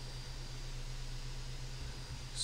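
Steady background hiss with a low hum underneath and no distinct events.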